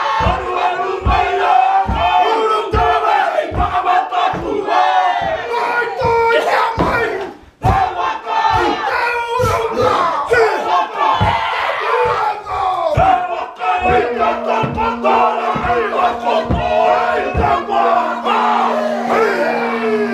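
A group of Māori men performing a haka: loud chanted shouting in unison, with stamping roughly once a second and a brief break a little past the middle.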